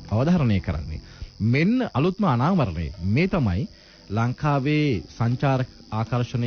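A person speaking continuously in short phrases with brief pauses, as on a radio talk programme.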